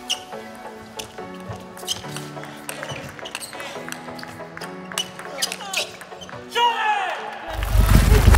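Electronic background music over table tennis ball strikes: sharp clicks of the ball off bats and table at irregular spacing. A deep bass comes in near the end.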